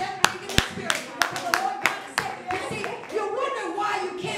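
Rhythmic hand clapping, about three claps a second, which stops a little past halfway, with voices underneath.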